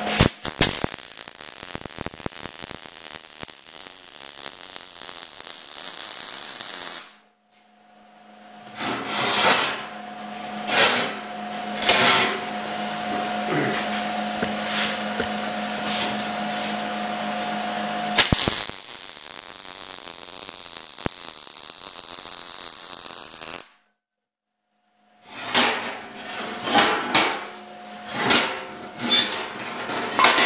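MIG welding arc on 16-gauge stainless exhaust tubing, fed .030 ER70S-6 wire at 180 inches per minute from an ESAB Rebel 215ic: a steady crackling sizzle for about seven seconds. It cuts off suddenly, more steady noisy stretches with a faint hum follow, broken by another abrupt silence, and the last few seconds hold knocks and clatter of the pipe being handled.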